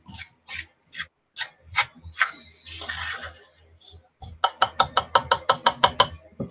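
Pet bird chirping: a few separate short chirps, then a fast run of about ten chirps near the end.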